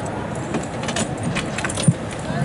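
Scattered light clicks and rattles, with a single dull thump near the end that is the loudest sound.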